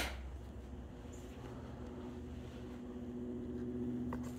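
A sharp click at the start, then a faint, steady low mechanical hum that grows slightly louder toward the end.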